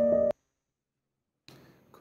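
Background music, a held keyboard chord, that cuts off abruptly about a third of a second in. Dead silence follows, then faint room tone near the end.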